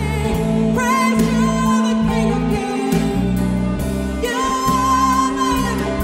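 Live worship band playing a slow song, with a woman singing lead in long held notes over electric bass, keyboard and drums.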